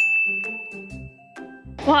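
A single bright bell-like ding that starts suddenly and rings out, fading away over about a second, over soft background music.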